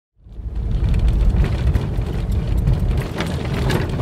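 Vehicle driving over a rough dirt road, heard inside the cabin: a steady low rumble of engine and tyres, with scattered knocks and rattles from the bumps. It fades in at the start.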